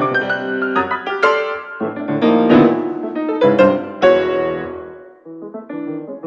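Baldwin grand piano played solo: a run of loud struck chords through the middle, the last dying away about five seconds in before softer notes resume.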